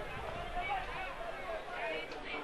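Football stadium ambience: a steady murmur with faint, distant voices calling out.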